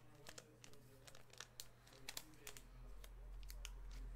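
Faint crinkling and crackling of foil trading-card pack wrappers being handled, with scattered light clicks.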